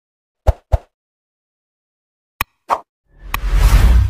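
Sound effects of an animated like-and-subscribe button: two quick pops about half a second in, a click and a pop around two and a half seconds, then a click and a swelling whoosh of noise near the end.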